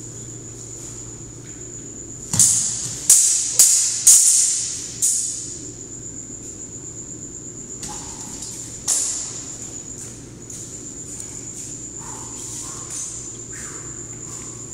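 A longsword and an arming sword clashing in sparring: a quick exchange of about five sharp blade strikes, each ringing briefly, between about two and five seconds in, and one more strike near nine seconds.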